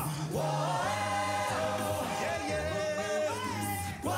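Male a cappella group singing in close harmony over a held vocal bass line.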